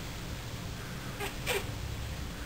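A newborn baby's brief squeak, falling in pitch, about one and a half seconds in, with a short click just before it.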